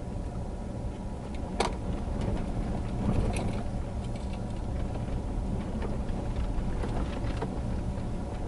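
Vehicle driving on a dirt road, heard from inside the cabin: a steady low rumble of engine and tyres on the gravel surface, with a few sharp clicks, the loudest about one and a half seconds in.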